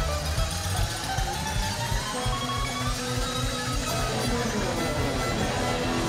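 Live country-rock band playing an instrumental passage: fiddle, electric guitar and drums over a steady beat. A melody line slides up in pitch over the first few seconds, then glides back down near the end.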